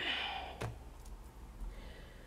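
A short breathy sigh, followed by a single light click about half a second in.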